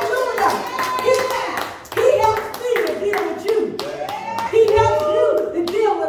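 A run of hand claps, coming several times a second, over a woman's raised voice preaching in a drawn-out, sing-song delivery.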